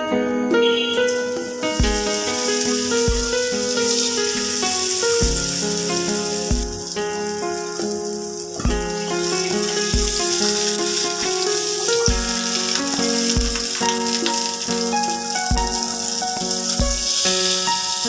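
Background music with a low beat about once a second, over the sizzle of a hilsa fish tail and roe frying in hot oil in a pan. The sizzle starts about a second in and carries on steadily.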